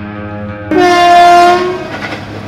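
Train horn sounding one steady blast of about a second, starting about a second in and then fading away.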